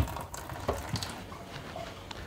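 Kitchen sink tap running faintly as hands are rinsed under it, with a sharp click at the start and a few small knocks.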